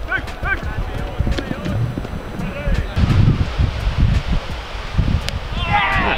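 Wind rumbling on an outdoor camera microphone, with faint voices in the middle; near the end several voices shout at once.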